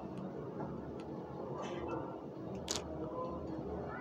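A few faint clicks and taps of ring light parts being handled while a part is unlocked, the sharpest about two and a half seconds in, over a steady low hum.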